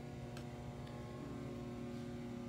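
Steady low hum of room tone, with a faint tick about half a second in.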